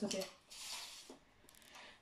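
A short word, then a soft scraping rustle lasting about half a second as a plastic ruler is slid across a wooden tabletop and picked up.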